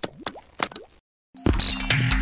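Logo-animation sound effects: a quick run of short pops with rising pitch glides in the first second, then after a brief silence a loud hit about a second and a half in that opens the intro music.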